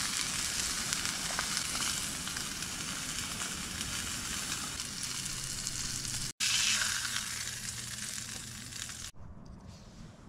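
Steak frying with a steady, loud sizzle. It breaks off abruptly for an instant a little past halfway, resumes, then cuts off suddenly near the end.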